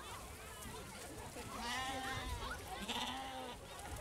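Icelandic sheep bleating in a crowded pen, with two long, wavering bleats about halfway through over the murmur of a crowd.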